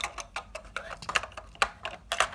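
Small plastic Lego bricks clicking and knocking as they are handled and pressed into place: an irregular run of sharp little clicks.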